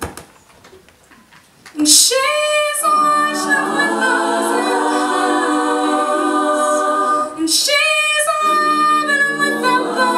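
All-female a cappella group singing in close harmony with no instruments. The voices break off for nearly two seconds, then come back in together with sustained chords, pausing briefly again about seven seconds in before re-entering.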